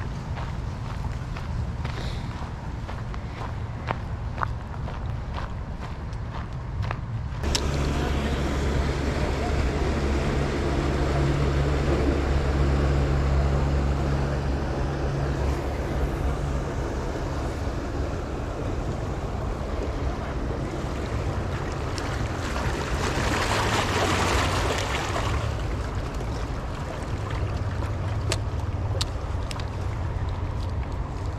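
Motorboat engine running out on the river, a steady low drone, with wind noise on the microphone that swells for a couple of seconds in the second half.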